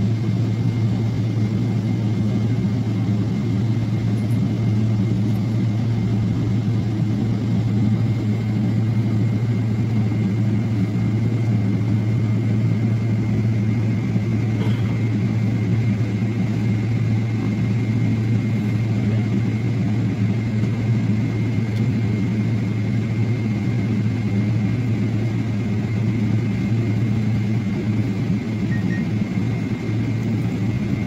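Airport apron transfer coach running, a steady low engine hum with a faint high whine throughout, heard from inside the bus.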